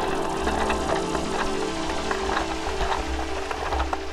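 Mountain bike descending a rough dirt trail, with wind rumble on the camera mic and quick rattles and knocks from the bike over the ground. Steady held tones of background music run underneath and fall away near the end.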